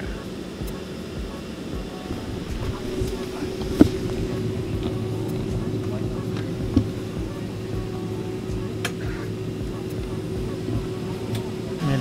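Steady hum inside a jet airliner's cabin just after it has stopped at the gate, with a constant low tone. Two short clicks stand out, about four seconds in and near seven seconds.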